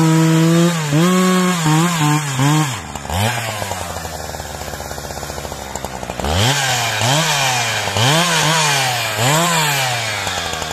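Husqvarna 372XP two-stroke chainsaw at full throttle cutting through a log. About three seconds in it drops to a ticking idle, and from about six seconds in it is blipped repeatedly, the revs rising and falling in quick bursts.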